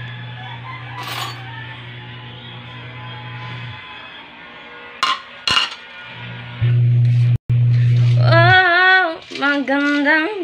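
A plate and spoon clinking: one sharp clink about a second in and two more about five seconds in, over background music with a singing voice near the end.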